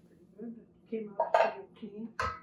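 A few short clinks and scrapes of kitchen utensils against a metal tin can and a steel cooking pot, the loudest about halfway through.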